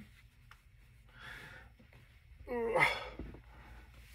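A man's breathing: a soft breath out about a second in, then a short, louder voiced sigh that falls in pitch near the middle, the effort sounds of pulling on a heavy crocheted cardigan.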